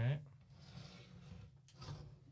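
Whitetail antler rack being shifted on a wooden tabletop: faint rubbing, then one short knock a little before the end.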